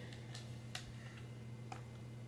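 Fingernails picking and tapping at a sealed eyeshadow palette, giving a few faint, sharp plastic clicks, the loudest about three-quarters of a second in. A steady low hum runs underneath.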